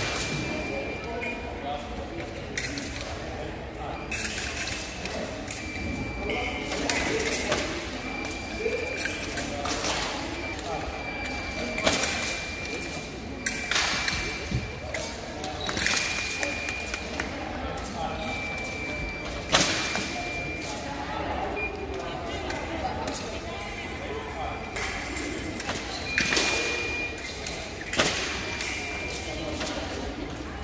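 Fencing hall during a foil bout: electronic scoring machines give short high beeps every second or two. Sharp stamps or blade-and-footwork impacts come at intervals, the loudest a little past the middle, over voices in a large echoing hall.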